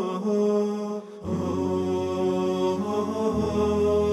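Chanted vocal music with long held notes that move in steps. After a brief dip just over a second in, a deeper low note comes in beneath the voices.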